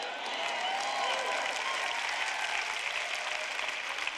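Large audience applauding steadily, with a few voices calling out about a second in.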